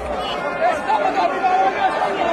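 A large crowd of football supporters in the stands, many voices shouting and singing together at once.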